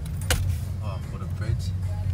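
A vehicle engine running steadily, heard from inside the cab, with a sharp click about a quarter second in and faint voices in the background.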